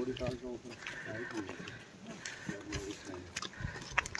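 Short bursts of low laughter and wordless voice sounds from people walking, with scattered footsteps and clicks of gear.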